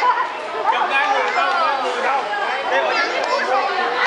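Overlapping chatter of several people, children's voices among them.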